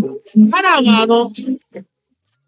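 A person's voice calling out in short syllables, then one long drawn-out cry that rises and falls in pitch about half a second in; the sound cuts out abruptly shortly before the end.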